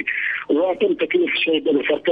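A man speaking Arabic over a telephone line, the voice thin and narrow.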